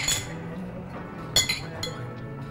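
Drinking glasses clinking together in a toast: three quick ringing clinks about one and a half seconds in, over background music.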